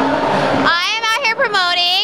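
Speech: a voice talking into a microphone, cutting in suddenly after a brief moment of noisy background hubbub.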